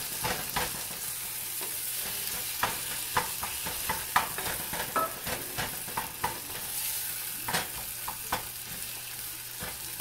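Chopped onion, tomato and green chilli sizzling in oil in a small saucepan on an electric coil burner, with a spoon scraping and knocking against the pan as the mixture is stirred. The sizzle is a steady hiss; the spoon knocks come irregularly, at times several a second.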